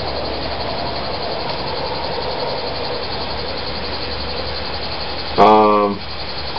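A steady, even mechanical drone with a low hum under it, like a motor running. About five seconds in, a person's voice holds a short, even-pitched 'uhh'.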